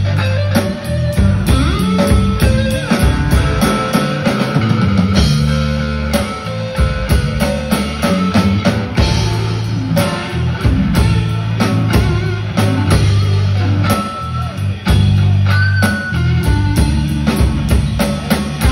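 Live rock band playing an instrumental passage on electric guitars and drum kit, with a steady drum beat under sustained low notes and guitar lines.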